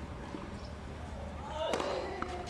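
Quiet tennis-court ambience, then about 1.7 s in a racket strikes the tennis ball with a short player's grunt.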